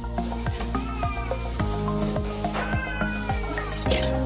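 Background music: sustained chords over a steady beat, with a gliding, voice-like lead line.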